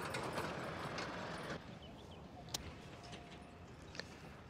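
Practice swing with a golf wedge: one sharp click about two and a half seconds in as the club clips the turf. Faint outdoor air noise drops away about halfway through.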